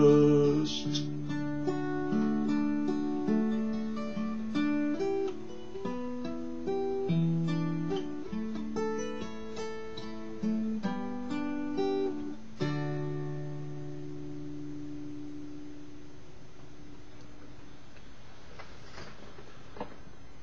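Fingerpicked acoustic guitar playing the closing instrumental phrase of the tune in single notes and chords, ending on a final chord about two-thirds of the way through that rings out and fades away.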